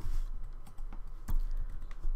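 Computer keyboard keys tapped a few times while typing code, one click louder a little past halfway, over a steady low hum.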